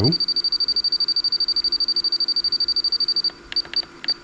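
RC transmitter keypad beeping in a rapid, even stream of short high beeps as the adjustment key is held down, stepping the channel 3 gyro-gain value from −70 toward zero. The stream stops a little over three seconds in, and a few single beeps follow from separate presses.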